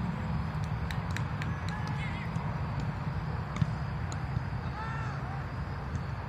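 Distant shouts and calls from players on a soccer field over a steady low rumble, with a few sharp knocks; the loudest knock comes about three and a half seconds in.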